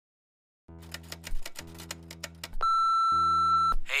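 Electronic intro music: sustained low synth tones with quick glitchy clicks, then a loud steady high beep held for about a second before the tones return.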